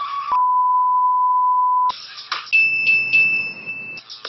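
A long electronic beep, one steady tone lasting about a second and a half. A rush of hiss follows, then a higher steady beep broken by a few clicks.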